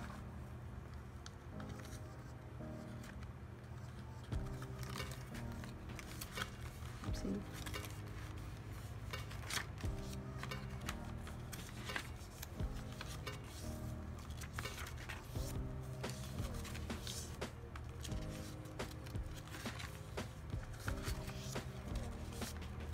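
Background music with steady notes, over the rustle and flap of paper pages being turned and handled, with scattered short clicks and taps.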